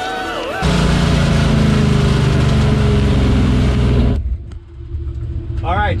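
A loud engine drone with heavy hiss that cuts off suddenly about four seconds in, followed by a drag car's engine idling with a low, steady note, heard from inside the car.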